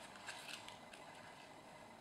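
Faint rustling and small ticks of hands handling the paper pages and waxed linen binding thread of a hand-sewn notebook.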